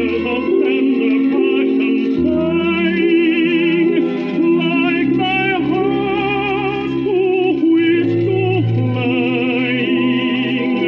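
A 78 rpm shellac record of a tenor with orchestra playing on a record player: a slow, sustained passage of strings and voice with wavering vibrato.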